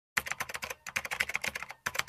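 Fast keyboard typing: a quick run of keystroke clicks, about a dozen a second, broken by two brief pauses. It cuts off suddenly just after the quotation text has appeared.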